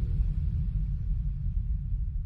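Deep sub-bass of an electronic dance track rumbling on alone and slowly fading out as the track ends, with the higher instruments already gone.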